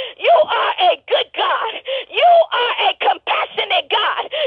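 A voice over a telephone line praying rapidly and fervently, its pitch swooping up and down in wail-like rises and falls, with no words that can be made out.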